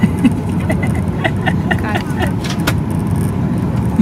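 Steady airliner cabin noise: a constant low rumble of engines and air, with faint voices nearby.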